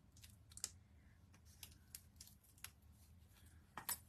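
A handful of faint, irregular small clicks and ticks: a pointed pick tool prying die-cut letters out of cardstock, where the letters sit pressed in tight.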